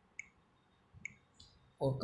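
Two short, faint clicks about a second apart, with a fainter tick shortly after, then a man's voice begins near the end.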